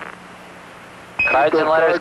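Steady hiss of the Apollo air-to-ground radio link, then a single short high beep about a second in, the Quindar tone that keys a transmission. A man's voice comes in over the radio right after it.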